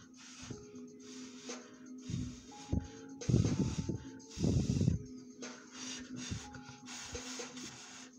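Breath blown hard onto a false-eyelash strip to set its lash adhesive tacky: two strong puffs in the middle, with lighter blowing around them, over steady background music.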